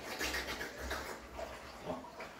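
Water splashing and sloshing in a large aquarium as big fish take feeder fish, with faint scattered splashes over a low rumble.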